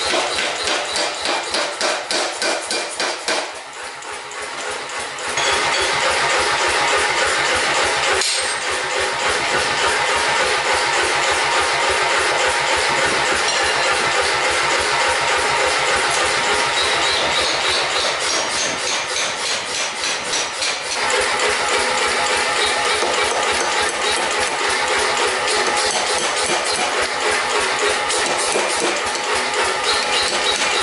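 Power hammer striking a red-hot steel axe blank in rapid, evenly repeated blows. The blows ease off briefly a few seconds in, then carry on steadily.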